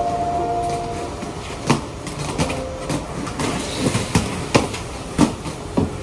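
Roller skate wheels rolling on a concrete slab, a steady rumble broken by several sharp clacks as the skates strike and turn.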